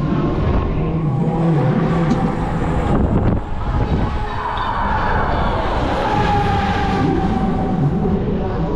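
Onride sound of a swinging pendulum fairground ride: a steady loud rush of wind and ride noise over the camera, with fairground music underneath.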